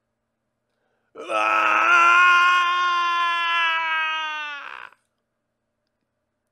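A single long, held scream of "Aaaahhh!", acted out in a man's voice as a villain's death cry. It starts about a second in, holds a steady pitch and trails off near the end.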